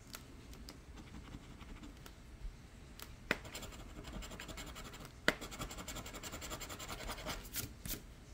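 A coin scratching the latex coating off a paper scratch-off lottery ticket: a few light taps, two sharper clicks, then a fast run of short scratching strokes, several a second, in the second half.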